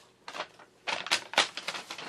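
Handling noise from a charging cable and hands on a desk: a brief rustle, then a quick run of sharp clicks and rustles about a second in.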